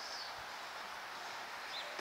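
Quiet outdoor ambience: a steady hiss, with one faint short high chirp near the end.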